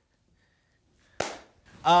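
Near silence, broken a little past halfway by one sharp snap that dies away quickly; a man's voice starts near the end.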